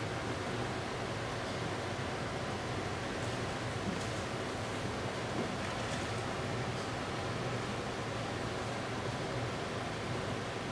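Steady room hiss with a low hum, broken by a few faint soft clicks.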